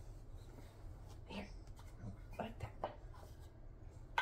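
A few light taps and knocks from a toddler handling a small toy, over quiet room tone, with a couple of soft spoken words.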